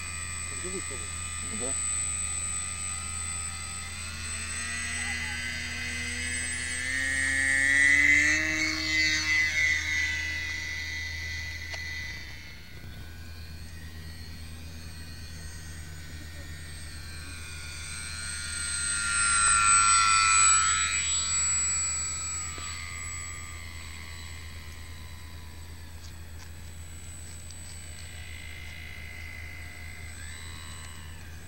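Motor and propeller of a small foam RC seaplane in flight: a steady high-pitched whine that swells and drops in pitch as the model flies past, twice, about eight and twenty seconds in.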